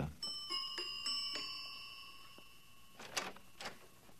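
Radio-drama door chime sound effect: about five quick struck notes, whose bell-like tones ring on and fade away over about two and a half seconds. A couple of faint short noises follow near the end.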